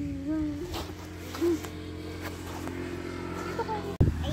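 Brief, high-pitched vocal sounds from a young child, near the start and again about a second and a half in, over a steady low rumble with a few light clicks.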